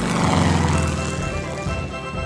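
A propeller-plane fly-by sound effect over theme music: the engine drone swells to its loudest about half a second in, then fades.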